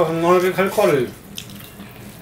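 A person's voice drawing out one vowel sound for about a second, falling in pitch at the end, then quieter with a faint click.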